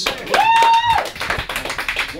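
Quick hand clapping from a small group, with one held high-pitched tone about half a second long near the start.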